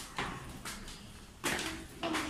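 Footsteps climbing concrete stairs in a narrow tiled stairwell: a few sharp slaps and scuffs of shoes and flip-flops on the steps, about three in two seconds.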